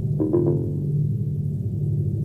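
Ambient electronic music from a Yamaha MODX6 FM synthesizer sequenced alongside a Eurorack modular system: a sustained low synth bass, with two short, sharply struck notes a fraction of a second in.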